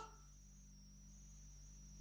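Near silence: faint room tone with a thin, steady high-pitched whine and a low hum.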